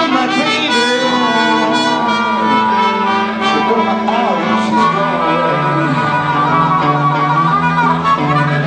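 Live blues band playing an instrumental passage: a lead wind instrument plays held and bending notes over a steady bass line.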